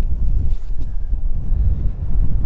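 Wind buffeting the microphone in a breeze: a loud, gusty low rumble.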